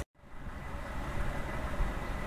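A split second of dead silence at the start, a break between two separately recorded narration clips, then the steady background noise of a home voice recording: an even low rumble with a faint thin high tone running through it.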